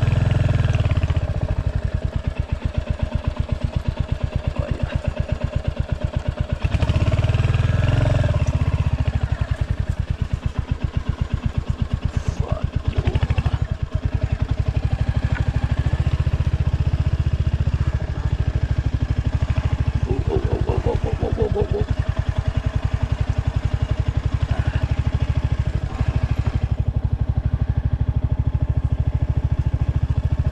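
Royal Enfield Hunter 350's single-cylinder engine running steadily as the bike is ridden along a sandy trail, its exhaust pulses regular throughout; it gets louder about seven seconds in.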